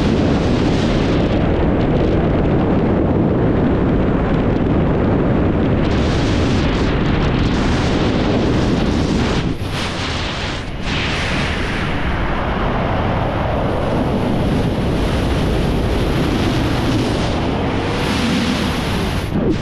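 Rushing airflow of a wingsuit freefall buffeting a GoPro action camera's microphone: a loud, steady wind roar that eases briefly about halfway through as the camera rolls.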